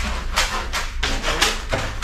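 A plastic sand tray for a parrot cage being handled and scraped. It gives a string of short scrapes and knocks, five or six in two seconds.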